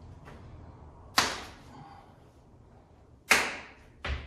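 Two sharp slapping impacts about two seconds apart: strikes landing on a training partner's body, each dying away quickly.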